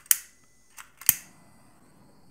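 Two sharp clicks about a second apart from the igniter of a small handheld butane torch, followed by a faint steady hiss as the flame burns.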